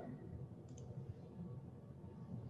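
Two faint computer mouse clicks in quick succession a little under a second in, over low room hum.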